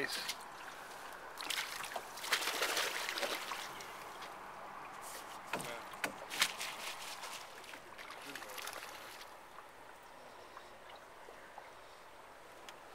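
Water splashing and sloshing at the side of a drift boat as a trout is released, then a few sharp knocks.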